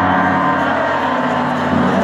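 Live rock band playing, with held, overlapping chords ringing out, heard from the audience in a large hall.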